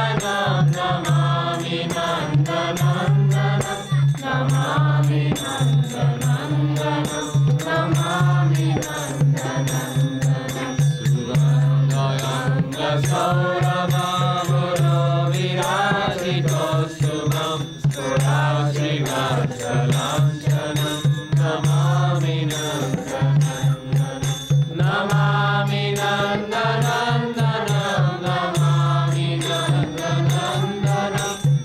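A group of devotees chanting a devotional kirtan together, their voices rising and falling in melody over a steady low drone.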